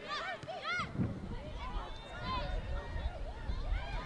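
Short, high-pitched shouts from players on the field carry over the pitch: a few calls in the first second and more at about two to three seconds in, over a low background rumble.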